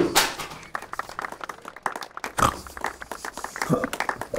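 A person's voice laughing and making wordless vocal sounds, starting abruptly, mixed with scattered short clicks and rustles.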